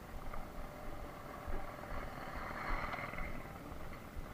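Wind rumbling on the microphone of a slowly ridden bicycle, over faint background noise that swells briefly about two seconds in.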